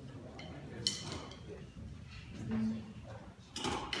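A jazz combo getting ready to play: scattered small clicks and knocks from instruments and drum hardware, a brief low held note about two and a half seconds in, and a quick run of clicks near the end just before the band starts.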